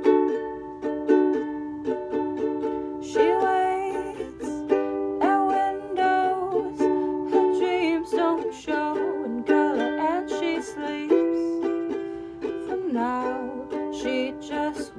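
Ukulele strummed in a steady rhythm of chords, with a voice singing over it from about three seconds in.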